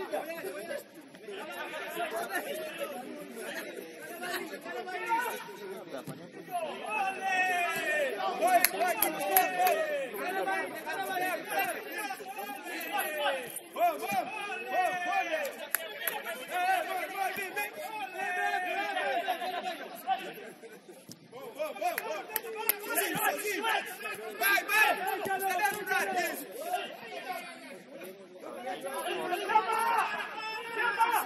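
Several people talking and calling out at once, the words indistinct, with a short lull about two-thirds of the way through.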